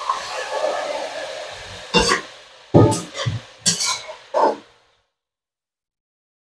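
Stir-fry of oyster mushrooms and chillies sizzling in a hot nonstick pan as a little water goes in; the sizzle dies down over the first two seconds. Then about five short scrapes and knocks of a slotted metal spatula against the pan, before the sound cuts off abruptly about five seconds in.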